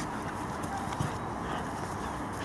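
German Shepherd puppies play-fighting on grass: faint scuffling and a few soft ticks over a steady background hiss.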